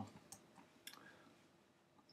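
Near silence with a few faint computer mouse clicks, one about a third of a second in and another about a second in.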